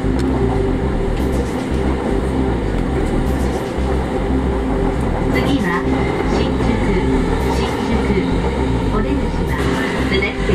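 JR Yamanote Line commuter train running on its rails, heard from inside the carriage: a loud, steady low rumble, with a voice heard behind it.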